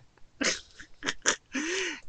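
A woman laughing: a few short breathy bursts, then a longer voiced laugh near the end.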